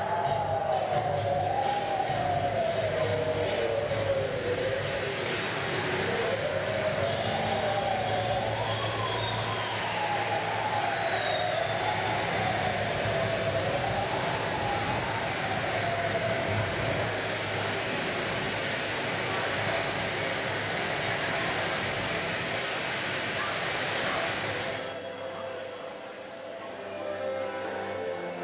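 Soundtrack of a sand-art show: a steady rushing noise with one wailing tone that slides slowly up and down, fading out after about two-thirds of the way; the rushing noise cuts off suddenly just before the end.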